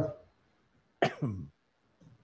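A man's voice: the end of a spoken phrase, then a short "uh" about a second in that starts abruptly and falls in pitch.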